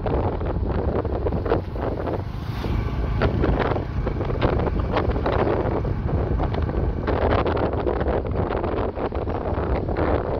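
Wind buffeting the microphone on a moving boda boda (motorcycle taxi), over the low rumble of its engine.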